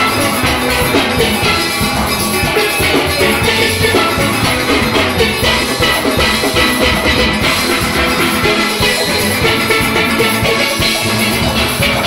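A full steel orchestra playing live: many chromed steelpans struck together in a dense, continuous run of notes, with a drum kit keeping the beat underneath.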